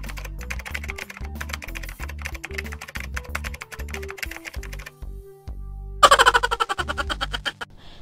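Background music with a bass line under a rapid run of typewriter key clicks, a typing sound effect for text appearing on screen. About six seconds in, a louder, busier stretch of sound comes in.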